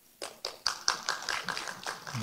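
A quick run of light, irregular taps or clicks, about five a second, quieter than the speech around them.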